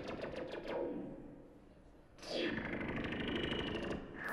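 Electronic music from a tabletop rig of controllers and effects: a rapid pulsing texture sweeping down in pitch fades out about a second in. Just past halfway a second downward sweep comes in, with held notes under it.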